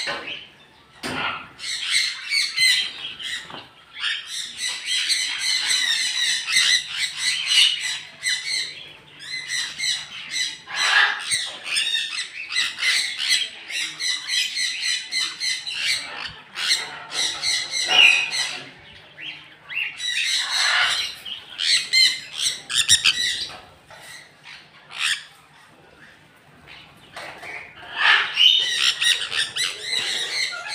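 Aviary parrots, sun conures among them, giving shrill, repeated screeching calls in overlapping bursts, with a quieter lull a little past two-thirds of the way through.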